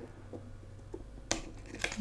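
Fingers and nails working at a stiff tarot card lying flat on a wooden table, trying to lift it: faint scraping with a few light clicks, the sharpest about one and a third seconds in.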